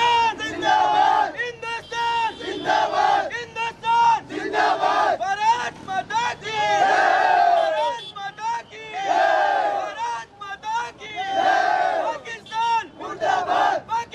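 A crowd of men shouting slogans in unison, the same short chant repeated again and again.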